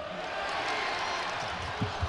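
Steady crowd noise filling a basketball arena, with a couple of short thumps near the end.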